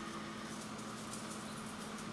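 Quiet room tone with a steady low hum, and faint light scratching of small parts (a metal plate and cord) being handled in the fingers.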